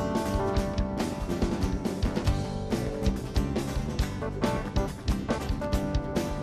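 Live band playing instrumental music: electric guitars over a drum kit, with a steady beat.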